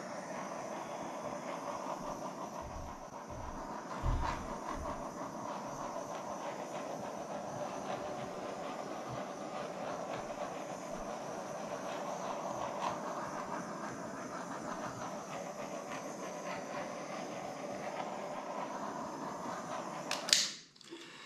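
Small handheld butane torch burning with a steady hiss as its flame is swept over wet acrylic paint to pop air bubbles, with a brief low bump about four seconds in.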